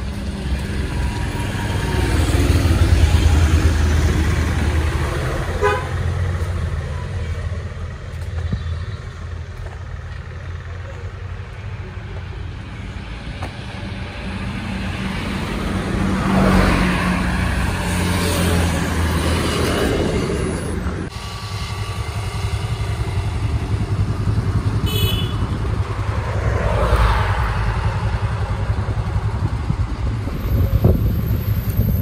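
Road traffic passing close by, with motor vehicles swelling past twice in the second half. A vehicle horn toots briefly late on.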